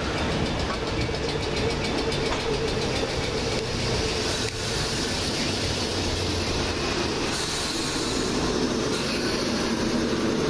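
Southern class 455 third-rail electric multiple unit moving along the platform, a steady rumble with motor hum and rapid wheel clicks over the rails in the first few seconds.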